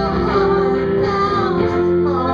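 Live band music: a woman singing into a microphone over guitar accompaniment, holding and sliding between notes.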